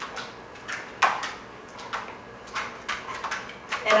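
Scattered taps and knocks of a dog's paws and claws and a person's footsteps on a tiled floor and mat as the dog walks and turns. The loudest knock comes about a second in.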